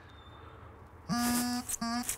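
Bagpipe practice chanter sounding two short notes on one steady, reedy pitch about a second in: the first held about half a second, the second cut off short. The player puts the breaking off down to a stuck reed.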